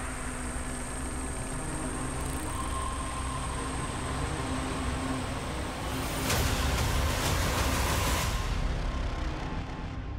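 Porsche 911 rally car's flat-six engine running at speed on a sandy desert track. It swells to a louder passage of engine and tyre noise from about six to eight seconds in.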